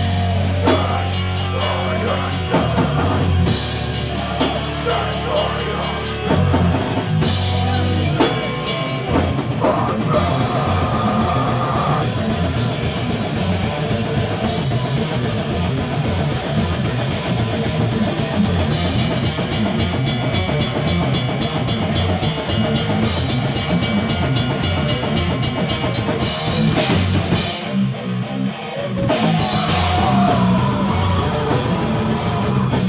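Heavy hardcore band playing live: distorted guitars, bass guitar and drum kit. The first eight seconds or so are a stop-start breakdown of heavy low hits with gaps between them, then the band goes into a dense, fast section with continuous drumming and cymbals, dropping out briefly near the end.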